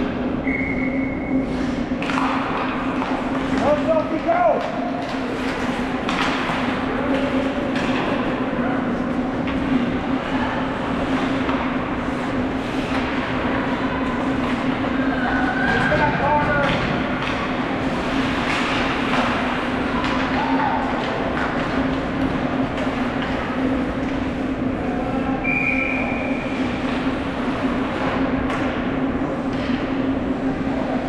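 Ice hockey play in an arena: skate blades scraping, sticks and puck clacking, and players' and spectators' voices calling out, over a steady low hum. Two short shrill tones sound, one just after the start and one near the end.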